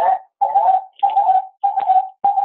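Echo loop on a video call: the word "there?" comes back again and again, about every 0.6 s, each repeat blurring more into a wavering tone. It is the sign of the remote computer's speakers feeding back into its microphone.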